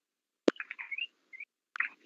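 Mouth noises from the reader between sentences: a sharp lip or tongue click about half a second in, followed by a faint, short, squeaky breath with rising chirp-like tones. Another click comes near the end, just before he speaks again. The gaps between these sounds are dead silent.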